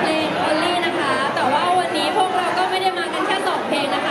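Several women's voices talking and chattering over microphones through a PA, echoing in a large hall.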